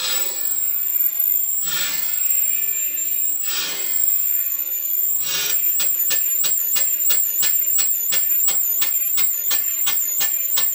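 Full-size marine steam engine running slowly with a hiss, its exhaust beats about two seconds apart at first, then quickening to about three a second about halfway through. It is being run through to blow oil out of the exhaust and clear condensed water from the cylinder and valve chest.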